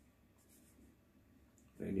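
Faint rubbing and handling noise of hands on a telescopic fishing rod's handle, then a man starts speaking near the end.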